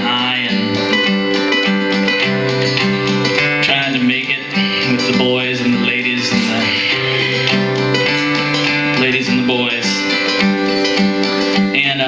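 Acoustic guitar played live, a steady run of ringing chords.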